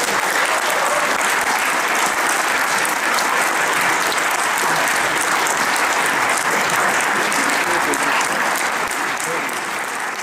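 Audience applauding, a dense, even clatter of many hands clapping that holds steady and begins to fade near the end.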